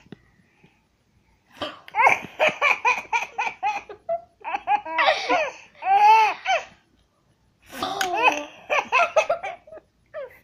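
A toddler laughing hard in three bouts of rapid, high-pitched giggles, with short breaths of quiet between them.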